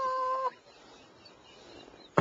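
A man's high-pitched, held wail, stifled behind his hand, lasting about half a second, followed by faint room noise.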